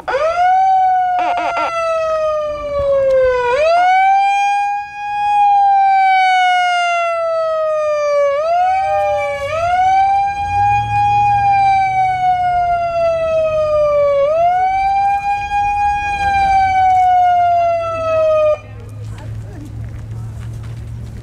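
A megaphone's electronic siren wailing in slow cycles, each rising quickly and falling slowly over about five seconds. It goes round about four times and cuts off suddenly near the end.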